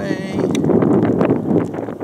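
Wind buffeting the microphone, with voices mixed in.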